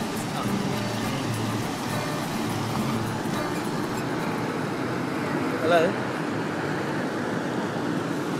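Busy outdoor street ambience: steady traffic noise and faint voices of people nearby, with one brief loud wavering voice-like call about six seconds in.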